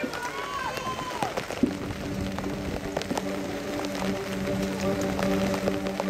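Marching band music: a gliding higher tone dies away, then about a second and a half in the band enters on a steady, sustained low chord that holds through the rest, with scattered short ticks over it.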